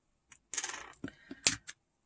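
Metal-backed eyeshadow pans clicking against a magnetic pickup tool and the Z palette as they are lifted out and set down: a few light clicks with a short scrape, the sharpest click about one and a half seconds in.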